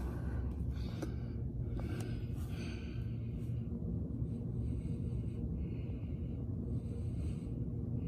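Soft breathing and phone-handling noise close to the microphone inside a car cabin, over a low steady rumble. There are a few small clicks early on. From about halfway come short hissy breaths roughly once a second.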